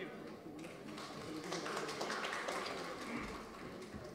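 Audience applauding, many hand claps together, with a murmur of voices underneath.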